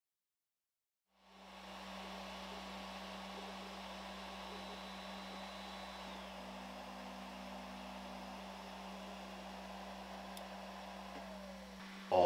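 Silent for about the first second, then the steady hum and hiss of the Ender 3 V2 3D printer's cooling fans still running after the print has finished. Faint whining tones drop in pitch about halfway through and again near the end.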